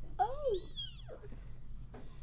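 A single meow, about a second long, rising then falling in pitch.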